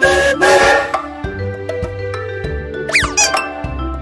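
Children's background music with a cartoon steam-train whistle effect, a short hissing toot in the first second. A quick falling whistle comes about three seconds in.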